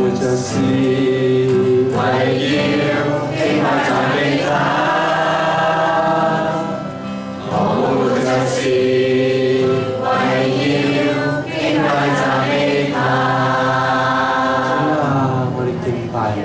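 A congregation singing a Chinese worship song together, led by a man's voice and accompanied by acoustic guitar, with several long held notes.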